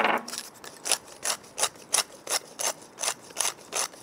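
Hand pepper mill grinding black pepper: a steady run of short gritty crunches, about two to three twists a second.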